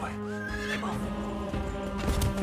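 A horse whinnies once, a single call that rises and then falls, over sustained music.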